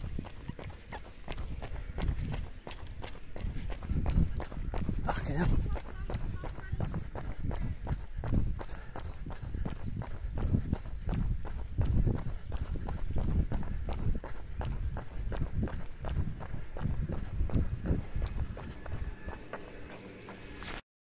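Quick, regular running footsteps on an asphalt road, with heavy breathing.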